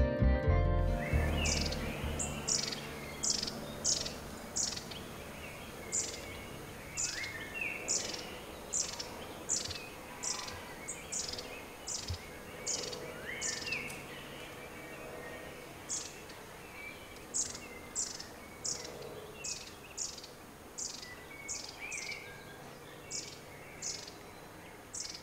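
Birds calling: a short, high call repeated about every half second, with an occasional lower rising note, over a soft background hiss. Background music fades out in the first second.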